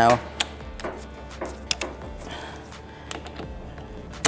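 A few sharp, scattered clicks of hydraulic quick-connect couplers being pressed together by hand, over a low steady hum.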